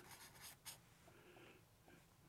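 Faint short strokes of a felt-tip marker drawing on paper, with a sharper tick about two-thirds of a second in.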